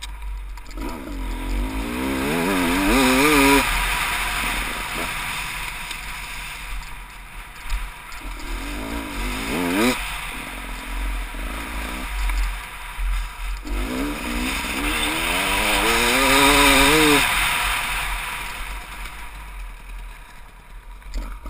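Dirt bike engine revving up hard and backing off three times while riding across rough grass: rising surges about a second in, around eight seconds and around fourteen seconds. A steady rushing noise of wind and tyres runs underneath.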